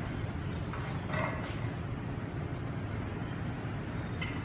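Steady low background hum with no distinct event, and a faint brief sound a little over a second in.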